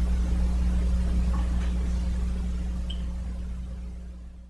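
Room tone with no speech: a steady low hum under a faint hiss, fading down toward the end.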